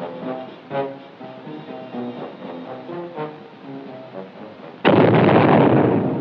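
Film soundtrack music, then a sudden loud explosion about five seconds in, its blast noise carrying on for over a second.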